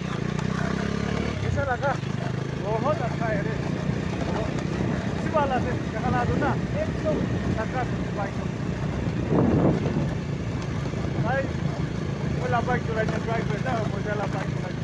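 Motorcycle engine running steadily as two riders travel along, a continuous low drone with voices talking over it.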